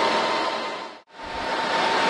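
Server cooling fans in a rack running under a heavy database workload: a steady, loud rush of air with a faint whine. The sound fades out to silence about a second in and comes straight back up.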